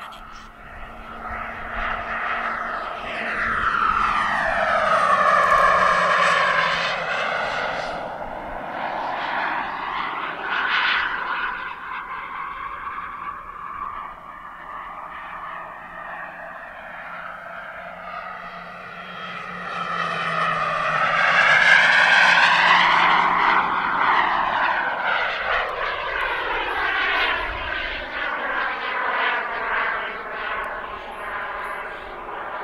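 Turbine engine of a Skymaster F-18C Hornet model jet running in flight, a steady whine that swells and fades twice as the jet passes, loudest about five seconds in and again about twenty-two seconds in, with a sweeping, phasing sound as each pass goes by.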